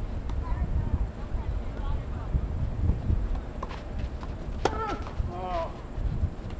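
Tennis ball struck by rackets during a doubles rally, with a sharp crack of a hit about two-thirds of the way in, followed by players' short shouted calls, over a steady low rumble of wind on the microphone.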